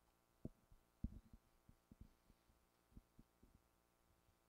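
A faint, irregular series of dull low thumps over near-silent background, the loudest about a second in.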